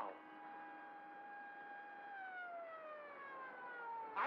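A siren on an old crime show's TV soundtrack, holding one steady pitch and then winding down in pitch over the last two seconds.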